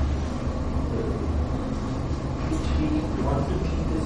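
Steady low hum of room tone, with a faint voice-like murmur about three seconds in.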